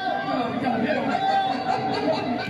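Crowd chatter in a large hall: many voices talking and calling out over one another at a steady level.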